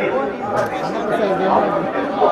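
Many people talking over one another: crowd chatter, with a faint steady tone held underneath.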